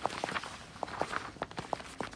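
Footsteps of several people in hard shoes walking across a tiled floor: a quick, irregular series of clicks.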